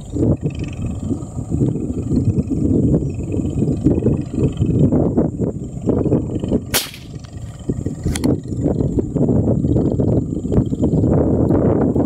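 Wind buffeting the microphone in a dense, uneven low rumble. About seven seconds in comes a single sharp crack, a shot from the scoped air rifle aimed at fish in the water, and about a second later a lighter click.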